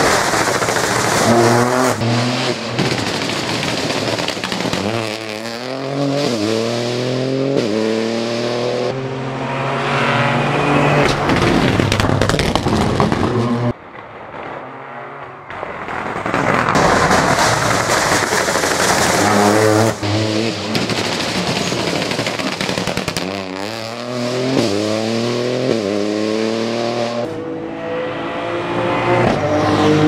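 Rally cars at full throttle on a tarmac stage, two passes in turn, the second a Peugeot 208. Each engine note climbs in pitch and drops back at every upshift, several times per pass, with a sudden break in level about halfway through where one pass gives way to the next.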